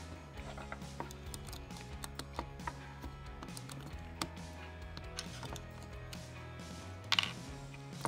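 Quiet background music with steady low held notes, under small plastic clicks and taps from a toy monster truck and its snap-on plastic wheels being handled and fitted. A short hiss comes about seven seconds in.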